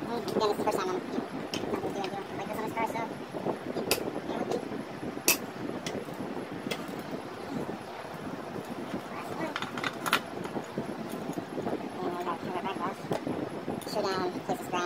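Indistinct voices with a few sharp clicks from tools and parts being handled in a car's engine bay; the loudest click comes about five seconds in, and another comes near ten seconds.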